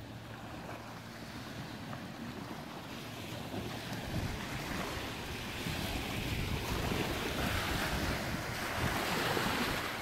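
Wind blowing on the microphone over the wash of small waves on the bay, the wind rumble coming in and growing louder about four seconds in.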